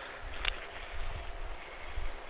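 Faint hiss and low rumble of a telephone line during a pause in the call, with a short click about half a second in.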